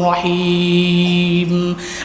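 A man's voice chanting in the drawn-out, melodic style of a Bangla waz sermon. It holds one long, steady note and breaks off shortly before the end.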